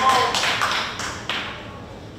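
Scattered sharp taps, about three a second and irregular, dying away about a second and a half in, with room echo; the end of a spoken word is heard at the start.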